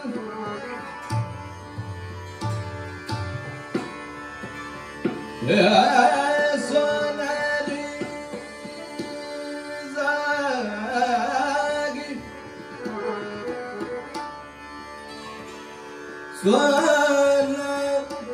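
Hindustani classical vocal in Raag Yaman: a male singer sings sustained, ornamented phrases broken by pauses, about three phrases, the last loud near the end. Tabla and harmonium accompany him, with scattered tabla strokes in the first few seconds.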